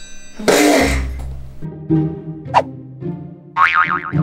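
Background music with cartoon-style comedy sound effects: a loud boing about half a second in, followed by further short effects.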